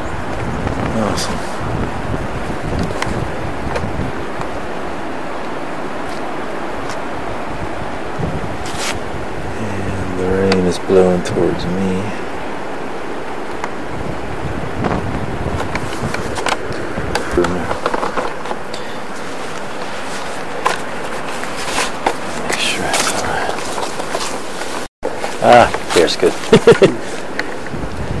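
Wind buffeting the camcorder's microphone, a steady rushing noise throughout, with a short burst of a person's voice about ten seconds in and a few handling knocks near the end.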